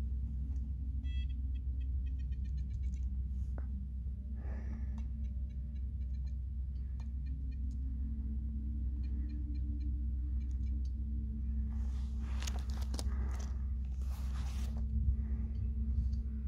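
Steady low wind rumble on the microphone, with faint short whirring ticks from small RC servos as the glider's control surfaces are moved for trim. Near the end come a few seconds of louder rustling.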